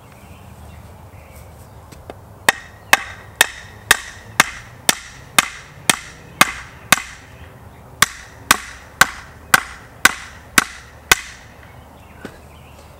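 Hammer pounding the top of a wooden gate post to drive it into soft garden soil. About seventeen sharp strikes come roughly two a second, with a pause of about a second midway.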